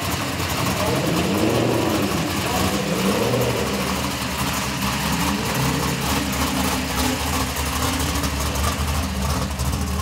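Drag-race late-1970s Cadillac coupe's engine, revving up and down several times in the first few seconds, then running steadily as the car rolls slowly forward.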